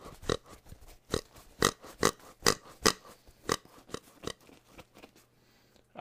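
A run of sharp, irregular clicks, roughly three a second, stopping about four seconds in.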